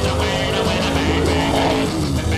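Rock music with car engines revving as the rally cars pull away, their pitch rising.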